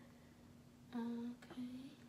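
A quiet room with a faint steady hum. About a second in, a girl says a short, flat, hummed "okay" in two parts.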